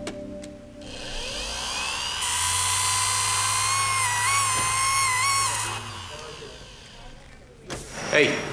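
Handheld electric surgical tool spinning up about a second in, then running with a high whine and hiss for about three and a half seconds, its pitch dipping and rising as it is worked, before it winds down. A sharp click near the end.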